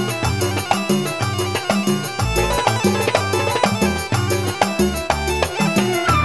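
Live band music with a quick, regular hand-drum beat over bass and keyboard.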